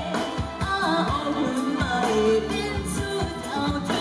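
A woman singing a pop song live into a microphone, backed by a band with a steady drum beat.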